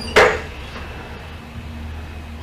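A single short knock just after the start, then a low steady hum.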